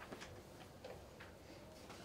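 Near silence: room tone with a few faint, irregularly spaced clicks.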